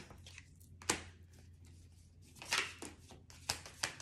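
Tarot cards being handled and dealt from the deck onto a stone tabletop. A single sharp snap comes about a second in, a short flurry of card noise follows about two and a half seconds in, and a few more clicks come near the end.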